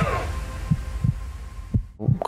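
Heartbeat sound effect in a documentary soundtrack: paired low thumps about once a second over a low drone, dying away near the end.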